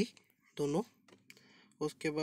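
A man's voice speaking briefly, with a few quick, light clicks about a second in.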